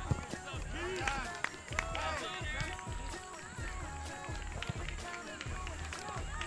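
Many voices shouting and calling at once across a soccer field, overlapping throughout, with a low rumble under them.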